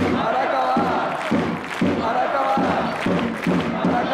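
Football supporters chanting in unison, backed by a drum beating about twice a second.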